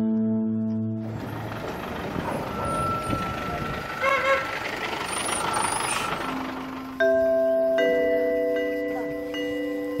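Outdoor village-road noise: a steady rumbling hiss with a few faint high chirps, after strummed acoustic guitar music dies away in the first second. About seven seconds in, soft chiming mallet-instrument music starts suddenly.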